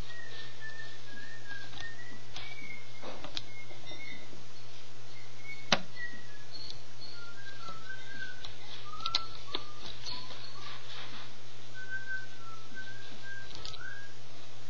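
A string of short, wavering whistled notes, meandering up and down in pitch, over a steady low hum. A few sharp clicks cut in, the loudest about six seconds in.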